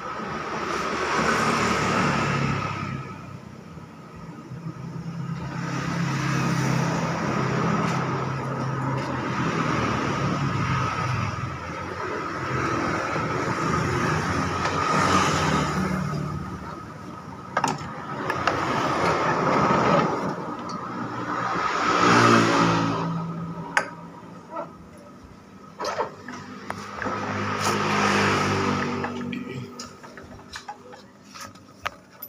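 Motor vehicles passing one after another, each swelling up and fading away over a few seconds. A few light metallic clicks come between them.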